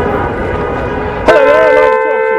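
Car horns honking from passing traffic: a steady tone that sounds faintly at first, then a loud, long blast starting a little over a second in.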